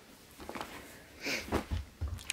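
Faint rustling and a few soft bumps as folded cotton muslin cloths are handled and stacked into a drawer.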